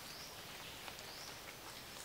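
Faint tropical rainforest ambience: a soft, even hiss of distant forest wildlife, with a few very quiet high calls.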